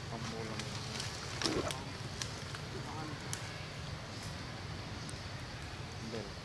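Indistinct human voices talking briefly a few times, over a steady low hum and scattered small clicks.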